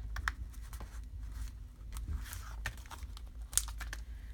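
Paper letter stickers being pressed onto a journal page and handled on their sticker sheet: scattered light clicks, taps and paper rustles, with a sharper click about three and a half seconds in.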